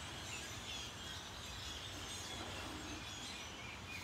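Many faint, short bird chirps scattered throughout, from a flock of unseen birds, over a steady low background hum.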